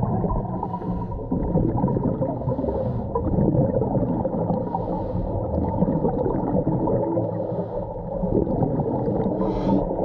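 Underwater sound picked up by a submerged GoPro HERO8: a continuous muffled rumbling and gurgling, typical of scuba divers' regulator breathing and exhaled bubbles.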